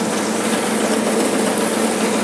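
Tractor engine and the tractor-driven Jagatjit straw reaper running steadily together under load, cutting standing straw stubble and chopping it into bhusa (straw fodder): an even mechanical whir with a faint steady hum.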